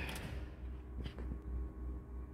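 A miniature circuit breaker on a distribution board being switched back on after tripping: a faint click about a second in, with a smaller one just after, over a low steady hum.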